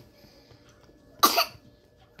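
A baby's single short cough about a second in, one of the coughs that come with his asthma.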